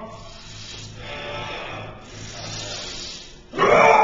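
Quiet gym room tone with a steady low hum during the setup of a heavy trap-bar deadlift. Near the end, a loud strained voice bursts in as the pull begins.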